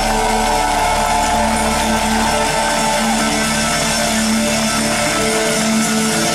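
Live rock band playing an instrumental passage with no singing: strummed guitars over bass, with held notes and one note that glides over the first few seconds.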